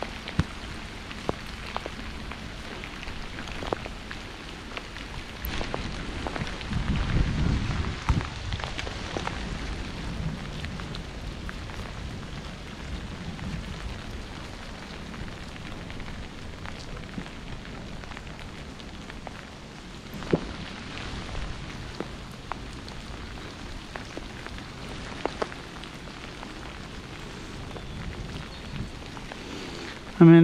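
Steady hiss of rain and bicycle tyres on a wet path, with scattered sharp ticks and a low rumble around seven to eight seconds in.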